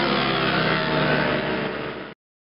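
Motorcycle engines running at high revs as the bikes travel along a race circuit's straight, fading away near the end.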